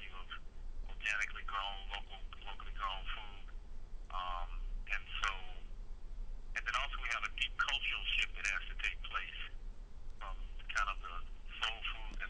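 A person talking with thin, phone-like sound, over a steady low hum.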